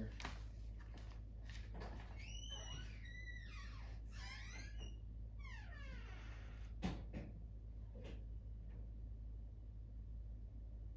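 Quiet room with a steady low hum, faint high chirping tones rising and falling for a few seconds, and a single sharp click about seven seconds in.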